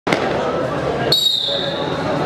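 Murmur of voices, then about halfway through a long, high whistle note starts suddenly and holds for about a second, falling slightly in pitch.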